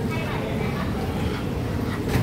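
Airport terminal hall ambience: a steady low rumble with indistinct voices of other travellers in the background.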